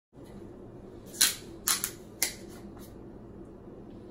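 Aluminium beer can being handled and cracked open: a few sharp clicks a second or so in, each with a short fizzy hiss, over a steady low hum.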